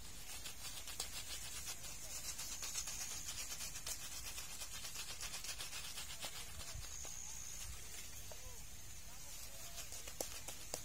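A shaving brush working lather into a beard with quick, repeated rubbing strokes. The strokes ease off about six and a half seconds in.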